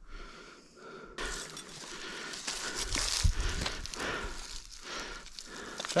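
Rustling and crackling of dry grass and leaf litter being disturbed close to the microphone, starting suddenly about a second in, with a dull thump about three seconds in.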